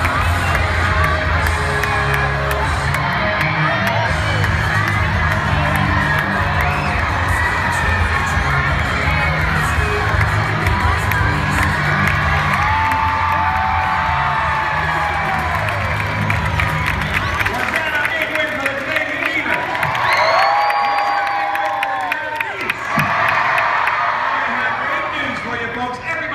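Large arena crowd cheering and shouting without a break, urging on dogs running a relay race. A few long, high shrieks rise out of the din around 13 s and again around 20 s in.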